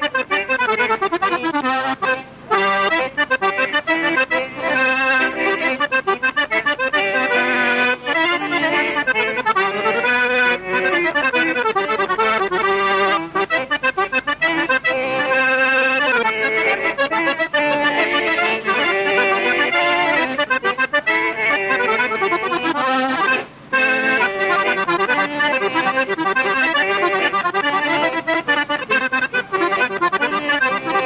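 A solo piano accordion playing a tune, with two brief breaks, one about two seconds in and one about three quarters of the way through.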